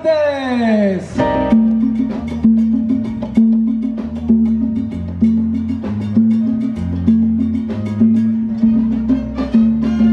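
A live salsa band kicks in about a second in and plays a steady dance beat, with congas, drum kit, a repeating bass figure and keyboard.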